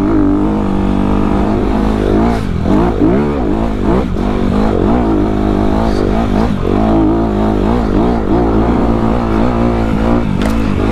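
Dirt bike engine revving up and down over and over as the bike is ridden hard along a sandy desert track, its pitch rising and falling with the throttle and gear changes.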